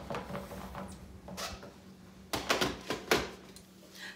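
Handling of a plastic personal-blender cup as its blade lid is screwed on: a few short plastic clicks and knocks, mostly in the second half.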